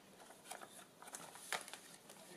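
Faint rustling and a few soft ticks of thick paper as a page of a handmade journal is turned by hand, with the sharpest tick about one and a half seconds in.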